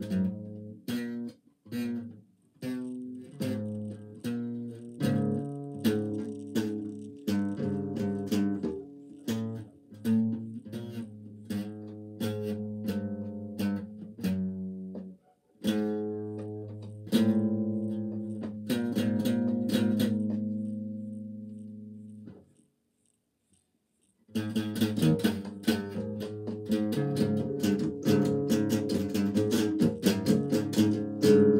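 Acoustic guitar played solo: a slow, low-pitched piece of picked notes and chords. A long chord dies away into a couple of seconds of silence about three-quarters of the way through, then the playing resumes quicker and denser.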